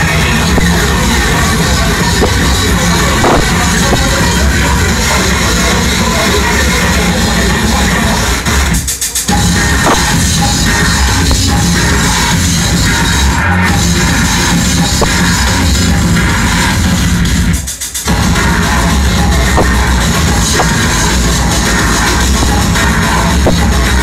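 Loud electronic dance music from a live DJ set, heavy in the bass. The music cuts out briefly twice, about nine seconds in and again near eighteen seconds.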